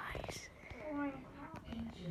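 Quiet, indistinct speech with whispering, with a few soft clicks and a brief hiss just before the voice.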